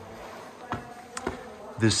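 A faint, steady buzzing drone with a few light clicks, then a single spoken word near the end.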